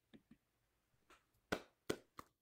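Scattered hand claps over a video call: a few faint claps, then two louder single claps past the middle, each a short sharp crack.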